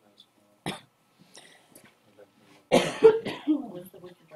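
A person coughing: one short cough under a second in, then a louder run of two or three coughs near three seconds.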